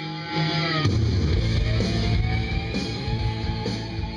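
Rock music with guitar playing from an iPod through an old home stereo system, heard in the room. It gets louder and heavier in the bass about a second in.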